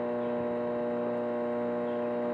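Microwave oven running at full power, giving off a steady electrical hum.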